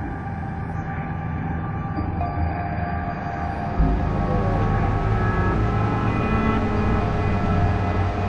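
Ominous horror-film drone: a heavy low rumble under several held, clashing tones that slowly swells, with a deep boom about four seconds in.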